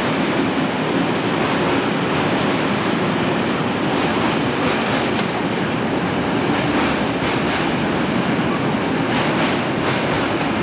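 Freight train of covered bogie hopper wagons rolling past at steady speed: a continuous rumble of wheels on rail, with sharp clicks over rail joints that come more often in the second half.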